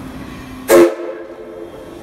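Steam whistle of the D51 498 steam locomotive: one short, very loud blast about two-thirds of a second in that overloads the microphone, its tone fading out within about half a second.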